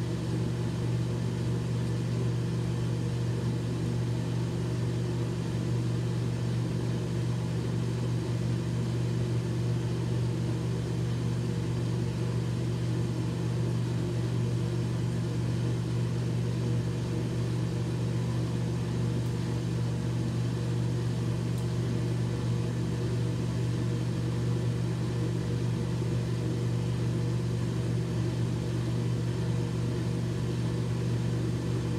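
Steady, unchanging hum of an electric fan motor running.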